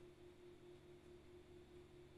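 Near silence, with only a faint, steady, low electrical hum.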